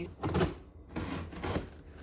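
Scissors slitting the packing tape on a large cardboard shipping box while the box is tipped and handled, giving a few short crackling, scraping bursts of cardboard and tape noise.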